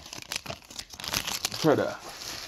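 A hockey card pack's wrapper crinkling and tearing as the pack is opened and the cards are pulled out, with a stream of small crackles. A short voiced sound comes near the end.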